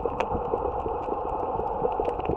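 Underwater reef ambience: a steady muffled hiss with scattered sharp clicks and crackles, typical of snapping shrimp on a coral reef.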